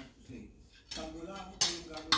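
Metal spoon and fork clinking and scraping on plates while eating rice, with one sharp clink a little past halfway.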